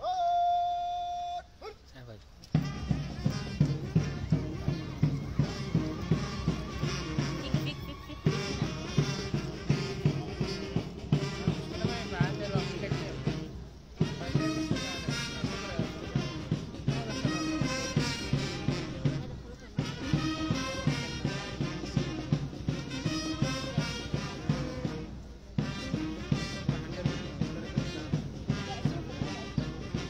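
Band music with brass and a steady beat of about two beats a second, breaking off briefly every six seconds or so. It is preceded by a single held note about a second and a half long.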